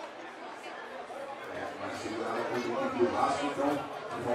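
Indistinct chatter of several voices talking over one another, growing louder about halfway through.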